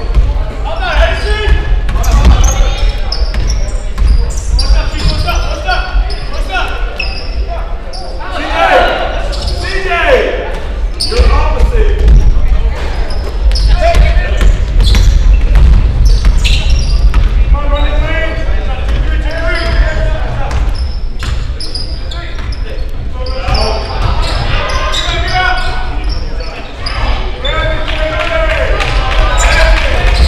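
Basketball game ambience in a large gym: a ball bouncing on the hardwood court again and again, with shouts and chatter from players and spectators echoing through the hall.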